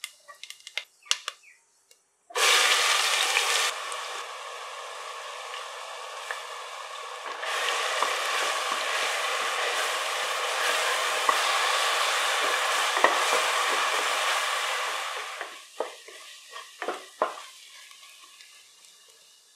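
Fennel seeds crackling faintly in hot oil, then a sudden loud sizzle about two seconds in as chopped onions go into the oil in a pressure cooker. The onions keep frying with a steady sizzle, louder from about seven seconds in. Near the end it dies down to a few scrapes of a wooden spatula against the pan.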